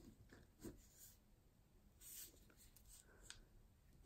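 Faint scratching of a ballpoint pen writing on paper, a few short strokes, the longest about two seconds in.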